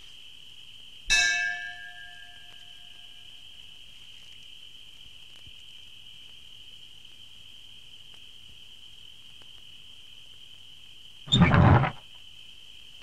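A doorbell struck once about a second in: a single metallic ding that rings on and fades over about two seconds, over the steady high chirring of crickets. Near the end there is a loud, noisy clatter lasting about half a second.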